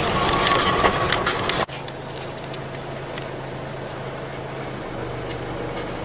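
Vehicle engine and road noise heard from inside the cab while driving along a gravel farm track: a steady low hum. In the first second or two it is louder and busier, with rattles, then it drops off abruptly.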